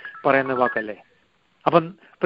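Brief telephone keypad (DTMF) tones beeping over a man's voice on a phone conference line, where a caller has pressed keys.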